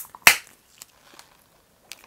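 Plastic Vaseline body-lotion bottle being unsealed and opened by hand: a click, then a louder sharp snap about a quarter-second later, and a short sniff near the end.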